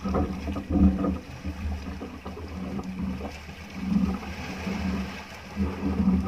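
Small outrigger boat's engine running at low revs, a steady low hum that swells and fades, with water sloshing around the hull.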